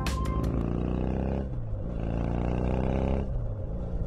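The closing music gives way to a low, steady growl with many close-set overtones. It comes in two stretches of about a second each, with a short dip between.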